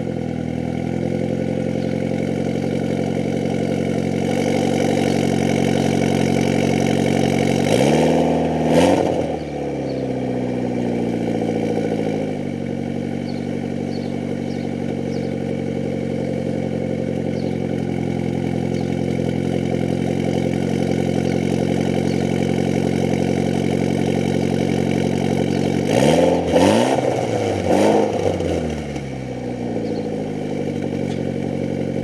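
Mitsubishi Lancer Evolution X's turbocharged 2.0-litre inline-four idling steadily through a Greddy Ti-C titanium turboback exhaust with muffler, heard close at the tailpipe. It is revved once about eight seconds in, then blipped a few times in quick succession near the end, falling back to idle after each.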